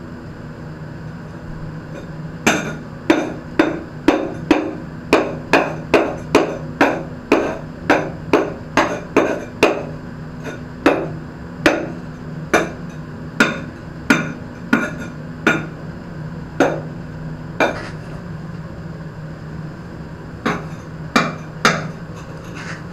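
Repeated sharp knocks on a ceramic floor tile, tapping it down into its wet mortar bed, about two a second for some fifteen seconds. After a short pause, a few more knocks come near the end. A steady low hum runs underneath.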